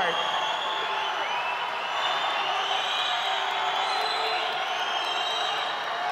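Spectators cheering swimmers on: a steady, dense wash of many voices with scattered shouts and whoops.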